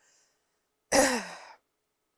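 A woman's single audible sigh about a second in: a breathy exhale that trails off with a falling voiced tone.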